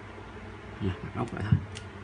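A man's voice making a few short wordless hums about a second in, over a steady low background hum, with a small click soon after.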